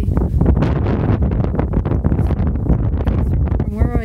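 Strong wind buffeting the microphone: a loud, gusting low rumble. A brief wavering pitched sound comes in near the end.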